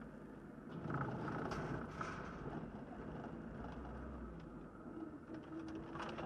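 Triumph TR7's engine pulling away at low speed, heard from inside the cabin, with tyre and road noise.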